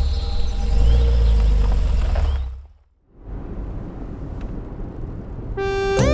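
Low, steady rumble of a car engine, fading out about halfway through. Near the end a faint hiss rises and a synthesizer chord comes in.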